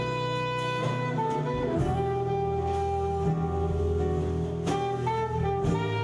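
Soprano saxophone holding long, sustained notes, dropping to a lower held note about two seconds in, over acoustic guitar, double bass and a drum kit with cymbals in a live jazz band.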